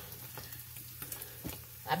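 Corned beef hash sizzling in a nonstick frying pan on high heat, a soft steady hiss with scattered small crackles as it browns.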